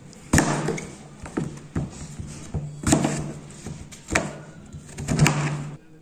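A kitchen knife cutting firm green apples on a plastic cutting board, the blade knocking down onto the board about seven times at an uneven pace.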